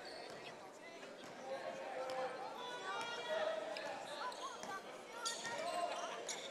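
A basketball being dribbled on a hardwood gym floor, the bounces heard as faint knocks under the steady murmur of spectators' voices in a large gym.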